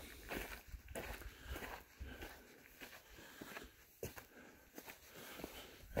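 Faint footsteps of a person walking up a gravel-and-dirt trail strewn with dry leaves and pine needles, a step every half second or so.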